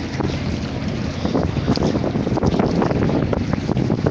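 Wind buffeting the microphone of a handheld outdoor recording, a loud, uneven rumble over a noisy background din.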